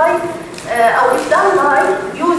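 A woman lecturing over a microphone in a large hall; only her speech is heard.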